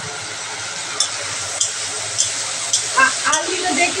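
Turmeric-coated prawns frying in hot oil in a black kadai, a steady sizzle, with a metal spatula knocking against the pan about five times as they are turned.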